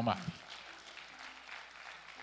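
A man's amplified voice ends a word, then faint, steady applause from the congregation in a reverberant hall.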